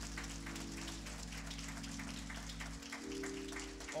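Organ holding sustained chords while the congregation claps and applauds. The chord changes about three seconds in.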